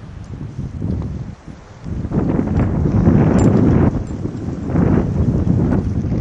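Wind buffeting the camera's microphone in loud, uneven gusts, growing stronger about two seconds in.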